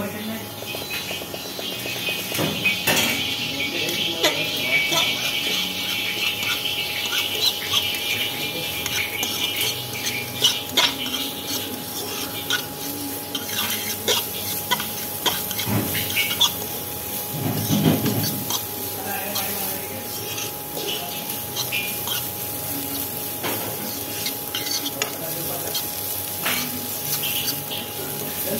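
Sliced vegetables sizzling in hot oil in a frying pan while a metal spatula stirs and tosses them, clicking and scraping against the pan many times. A thin steady tone runs underneath.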